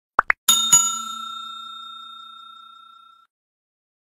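Subscribe-button sound effect: two quick clicks, then a bell ding struck twice in quick succession that rings and fades out over about two and a half seconds.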